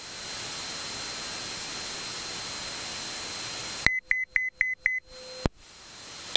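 Steady radio hiss in the aircraft headset audio for about four seconds, cut by a click. Five quick high beeps follow, about four a second, then a short lower tone that ends in a click.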